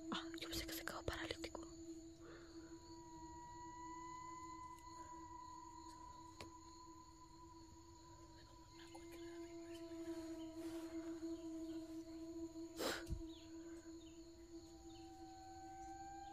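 Faint eerie sustained tones hold steady, while long drawn-out wail-like notes rise slowly and fade. A few sharp cracks sound in the first two seconds, and one louder crack comes about three-quarters of the way through.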